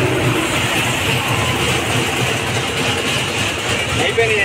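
A steady low mechanical rumble, like a running engine, under a constant haze of noise with no distinct events.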